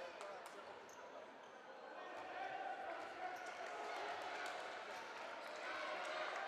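A handball bouncing on the court floor of a reverberant sports hall, several short sharp hits in the first second, over distant shouting voices of players and spectators.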